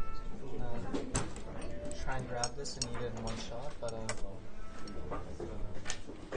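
Background chatter of other diners in a restaurant, with a few sharp clinks of dishes and cutlery about 1, 2.5 and 4 seconds in.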